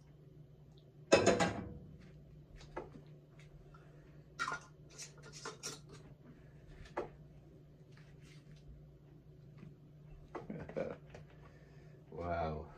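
A steel saucepan set down on the counter with a sharp clank about a second in. Then come a run of light metal-on-glass clicks as a metal lid is put on a glass jar and screwed down, and a rustle near the end as a towel is wrapped round the jar, all over a low steady hum.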